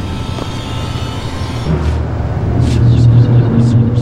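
Low, ominous drone from the film's sound design, swelling louder about two seconds in, with a higher steady tone joining near the end and a few short hissing whooshes over it.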